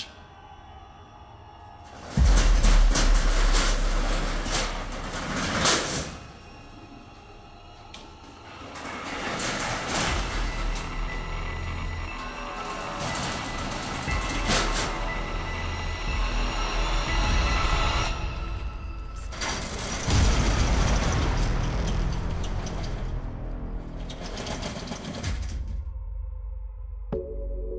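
Background music over the rattle and rumble of a corrugated metal roller shutter door being operated with a hook pole, loudest in a burst about two seconds in and again near twenty seconds.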